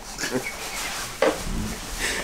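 A man laughing breathily and snorting, without words, with a sharp click about a second in.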